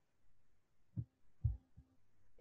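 Two short, soft low thumps about half a second apart over faint room noise.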